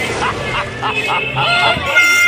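Several young men shouting and whooping in short, hoarse, repeated yells.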